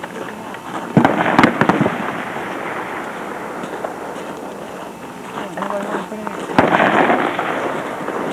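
Rifle shots on a firing range: a quick cluster of three or four sharp cracks about a second in and one more crack near the end, over a steady background of more distant firing.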